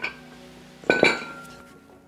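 A pair of plate-loaded dumbbells with metal plates set down on the floor: two metallic clanks about a second apart, the second louder and ringing briefly.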